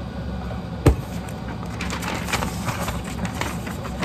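A single sharp knock about a second in, then a sheet of lined paper rustling and crinkling as it is picked up and handled.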